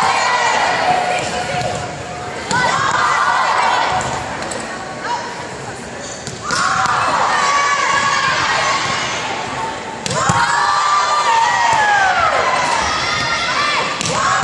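Volleyballs being hit and bouncing on a hardwood gym floor during a warm-up drill, with players' voices calling and chattering throughout.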